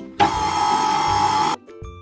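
KitchenAid stand mixer motor starting and running at speed in a steel bowl of liquid ingredients for about a second and a half, then cutting off. Light plucked background music plays underneath.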